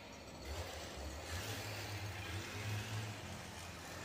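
Steady low rumble with a soft hiss: background noise with no distinct event.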